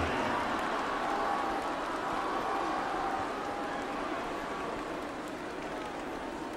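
Steady noise of a large stadium crowd, easing slightly over the seconds, with a few faint distant voices in it.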